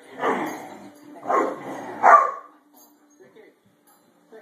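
Great Dane barking: three loud woofs in the first two and a half seconds, then quiet.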